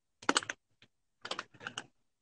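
Quiet clicks and taps of fingers on a smartphone as it is handled, in three short clusters with silence between.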